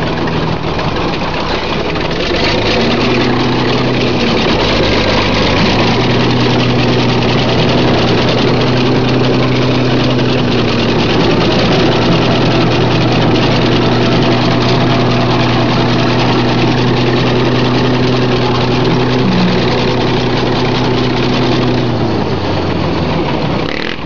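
International bulldozer's engine working under load as it pushes into and crushes cars. The engine note rises about three seconds in, sags briefly, then holds high and steady before dropping back near the end.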